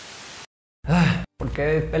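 A half-second burst of TV-static hiss that cuts off, then after a short silence a man's voice: a brief vocal sound about a second in, followed by speech.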